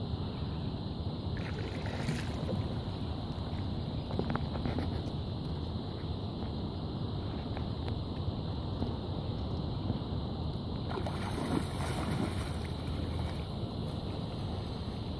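Steady wind rumbling on the phone's microphone over open shallow water, with a few faint water splashes.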